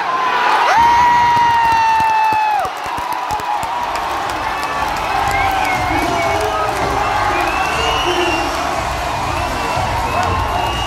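Stadium crowd cheering and shouting as a goal is celebrated. One long, steady horn-like tone lasts about two seconds near the start, and shrill shouts and whistles rise out of the crowd noise afterwards.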